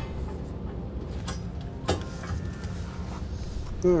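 Steady low background rumble with a couple of light clicks of bolts and hardware being handled, about a second and two seconds in, as the steel center section of an underbed gooseneck hitch is held up against the truck's frame for bolting.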